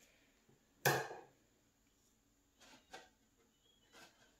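Handling sounds from a plastic seed-sowing container of potting soil: one short sharp knock about a second in, then two faint clicks near the three-second mark.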